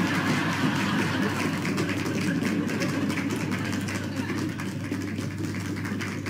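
Applause from a roomful of people, a dense steady clapping that eases slightly toward the end.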